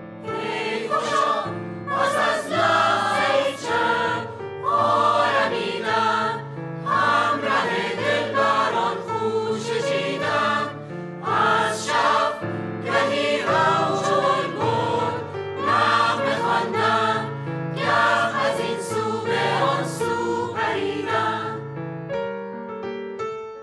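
Mixed choir singing a Persian song in phrases of about two seconds, over sustained instrumental accompaniment. The choir stops at the end as the piano carries on.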